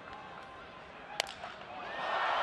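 A single sharp crack of a baseball bat breaking as it hits the pitch into a ground ball, about a second in, over a steady stadium crowd murmur that swells near the end as the ball is in play.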